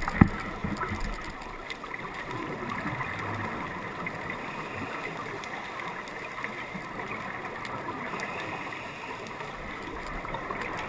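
Underwater sound of a scuba dive: a steady gurgling wash of bubbles, with a sharp knock right at the start.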